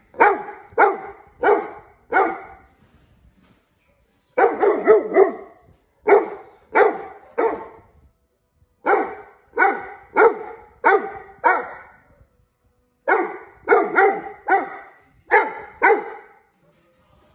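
A large black dog barking insistently at the person in front of it, as if complaining, in runs of three to five barks with pauses of a second or two between the runs.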